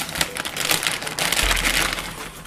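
Clear plastic bag crinkling and crackling as a graphics card is handled and worked out of it, a dense run of quick rustles throughout.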